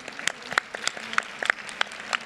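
Scattered audience applause: distinct, separate hand claps at an uneven pace rather than a dense roar.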